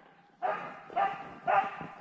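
Husky barking three times, about half a second apart, as it harasses a horse.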